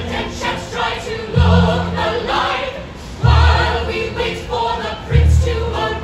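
A musical-theatre ensemble singing a choral passage in harmony, amplified through a stage PA, with a deep bass note landing about every two seconds.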